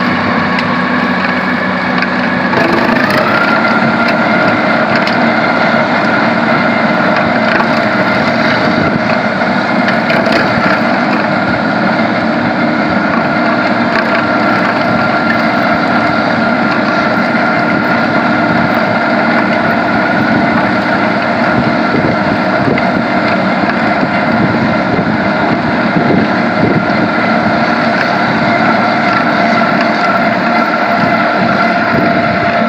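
Tractor-driven Ditch Angel rotary ditcher at work: the spinning cutting wheel chews through soil and throws it out in a continuous rushing, crunching noise over the steady hum of the tractor engine. The machine's pitch rises about three seconds in, then holds steady.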